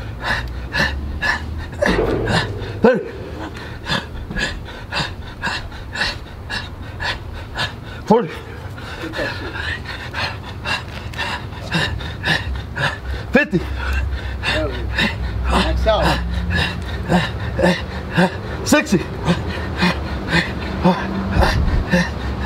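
A man panting hard in quick sharp breaths, about two a second, from the strain of a long set of push-ups, with occasional voiced grunts.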